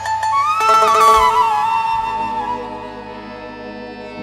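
Instrumental break in a live Punjabi/Saraiki folk song: a single melody line with pitch bends over steady held notes, fading away over the second half.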